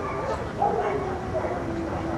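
A dog vocalising in short pitched calls, with a longer drawn-out call through the second half.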